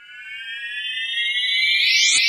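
Electronic siren-like tone opening a hip hop track. It fades in from silence and slowly glides upward in pitch, getting steadily louder.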